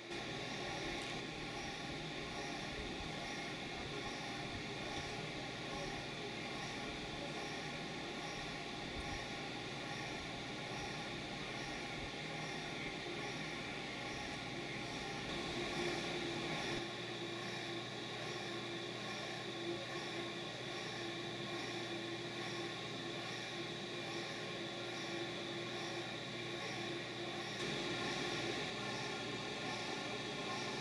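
Steady mechanical hum of running aquarium equipment, such as a circulation powerhead and pumps, with a water-noise hiss. A new steady tone joins about halfway through, and the low rumble drops soon after.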